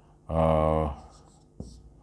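A man's voice holding one drawn-out syllable, followed by a soft tap and brief faint scratching of a marker writing on a whiteboard.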